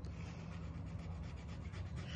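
A thin metal scratching tool scraping the scratch-off coating from a circle on a paper savings-challenge card. It makes a quiet, steady scratching that runs without a break.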